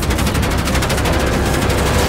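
Rapid automatic gunfire from an attacking drone: a fast, even stream of shots over a steady low rumble, as rounds strike the aircraft.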